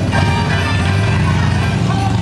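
Children's choir singing a Christmas carol with musical accompaniment, over a steady low hum.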